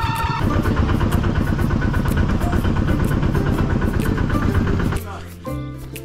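Motorcycle engine running, starting about half a second in and stopping abruptly about a second before the end, with music playing underneath.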